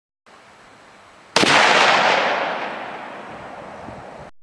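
A single .223 Remington rifle shot from a Ruger Mini-14, about a second and a half in, followed by a long rolling echo that fades over about three seconds.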